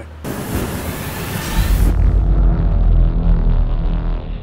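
Logo-intro sound effect: a hissing whoosh, then a deep bass boom that rumbles on and slowly fades.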